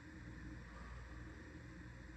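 Faint room tone: a low, steady hum with light hiss and no distinct event.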